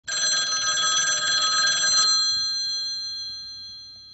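A bell rings with a fast rattling trill for about two seconds, then stops and its high ringing tones slowly fade away.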